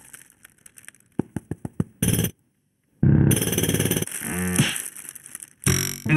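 Cartoon music and sound effects with no dialogue: a quick run of about seven plucked notes, a sudden drop to silence for under a second, then louder music with a wavering comic tone and a short burst near the end.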